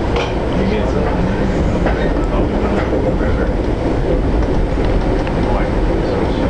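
Steady running noise of the Amtrak Capitol Limited passenger train rolling along the track, heard from inside the passenger car, with occasional light clicks.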